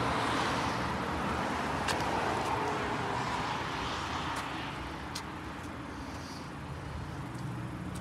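Road traffic going by: a vehicle passes in the first few seconds and fades away, over a steady traffic hum, with a few light clicks.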